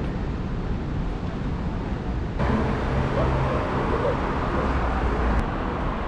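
City street traffic noise: a steady low rumble of vehicles. The background changes abruptly about two and a half seconds in.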